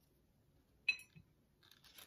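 A small plastic toy figure set down on a ceramic plate: one short, sharp clink about a second in, with a brief ring, followed by a few faint handling ticks near the end.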